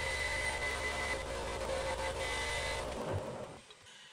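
A bench-mounted electric shop tool's motor running steadily for about three seconds, then switched off and winding down.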